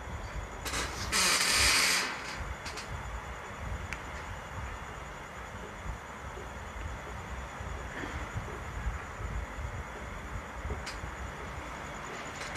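Steady low rumble and hiss of background noise, with a short burst of hissing noise about a second in.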